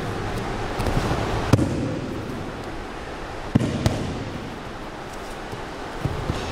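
Bodies and bare feet thudding on a gym mat as an aikido partner is thrown and takes breakfalls, with a rustle of movement throughout. The loudest thump comes about a second and a half in, and two more come close together about three and a half seconds in.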